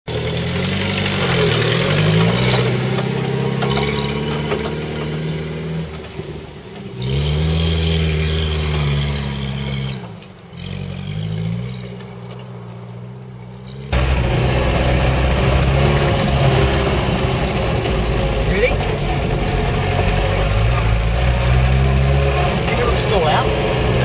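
Series 3 Land Rover engine working hard under load on a steep grassy hill climb, its revs rising and falling several times, with two quieter dips. About 14 s in, the sound jumps to a louder, steadier engine drone heard from inside the cab on the move.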